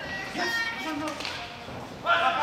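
Voices of onlookers, calling out and talking, fading somewhat toward the end.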